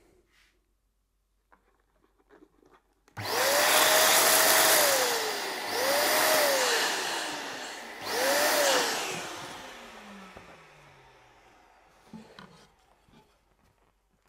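Electric balloon inflator blowing up a latex balloon in three bursts, starting about three seconds in. Each time the motor runs up to speed and then winds down, and the last burst dies away slowly.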